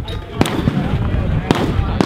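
Gunshots on an outdoor range, two sharp reports about a second apart, with voices in the background.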